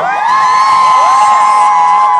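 Crowd of fans screaming and cheering: many high voices slide up together into one long, loud, held shriek.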